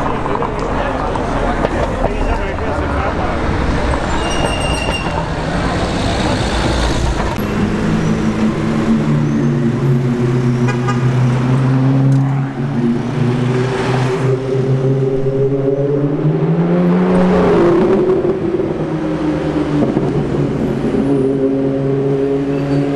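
Cars moving past a crowd of spectators with voices in the background, and a short high toot about four seconds in. From about eight seconds on, a sports car engine runs steadily at low revs, its pitch rising briefly near the end.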